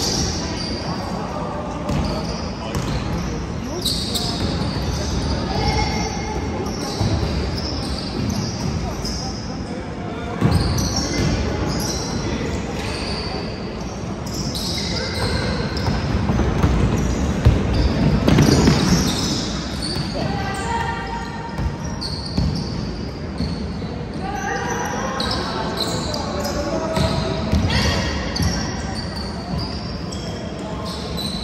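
Sounds of a basketball game in an echoing gymnasium: the ball bouncing on the hardwood court amid the general noise of play, with voices calling out, most clearly in the second half.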